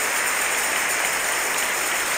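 A congregation applauding steadily.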